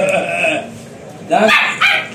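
Short yaps from a Labrador puppy straining for a raised steel food bowl, mixed with a man's playful teasing calls.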